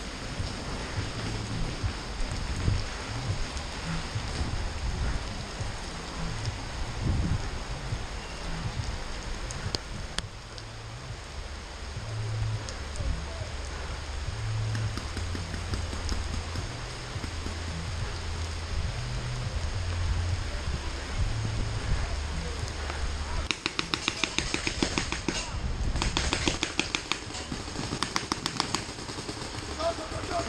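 Steady hiss of rain on a helmet camera over a low rumble on the microphone. About 24 seconds in, a paintball marker fires a quick run of evenly spaced shots for several seconds.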